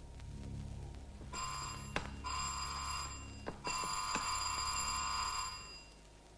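An electric bell ringing in three bursts, the last and longest about two seconds, with a few sharp clicks between them.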